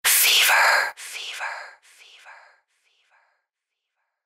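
A whispered voice in a production ident, loud for about a second and then echoing four or five times, each repeat fainter, fading out after about two and a half seconds.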